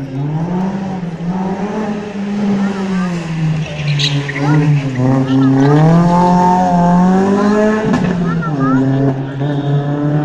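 Rally car engine working hard on a street stage, its pitch rising and falling with throttle and gear changes. It is loudest around six to seven seconds in as the car passes, and its pitch drops sharply about eight seconds in.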